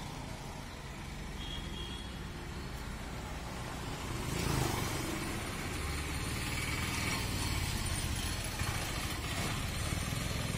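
Street traffic: scooters and other small motor vehicles running and passing close by. There is a louder passing rush about four to five seconds in.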